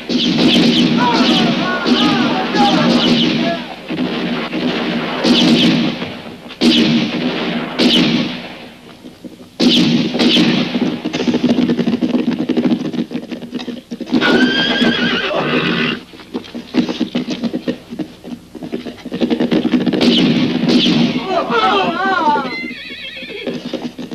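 Horses neighing and whinnying several times, with a few sharp gunshot cracks and the sound of the horses moving about, over a dense background of voices.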